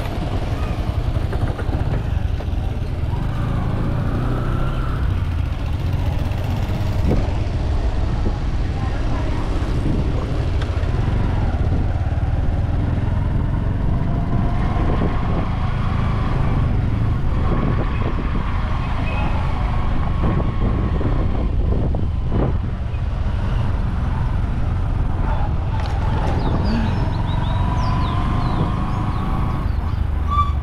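Steady low rumble of a moving vehicle, engine and road noise together with wind buffeting the microphone.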